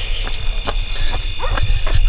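Steady high-pitched chorus of night insects over a continuous low rumble on the microphone, with a few faint clicks.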